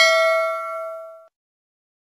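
Bell-like 'ding' sound effect of a subscribe-button animation, struck once and ringing out, fading away about a second and a quarter in.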